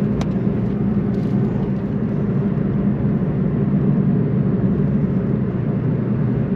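Steady engine and road noise inside the cabin of a Suzuki Swift Sport ZC33S, its 1.4-litre turbocharged four-cylinder running at an even speed.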